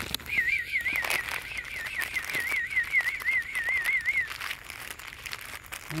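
A high, wavering whistle lasting about four seconds, its pitch wobbling about four times a second, over faint rustling clicks.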